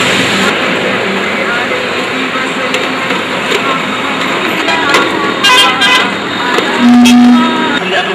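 Loud, dense street-type noise with voices mixed in. A short, steady low horn tone sounds about seven seconds in and is the loudest moment.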